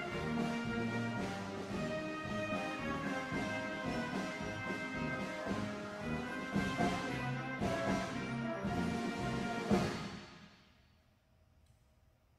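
Band music with brass and timpani ends on a loud final chord about ten seconds in, then rings away to quiet.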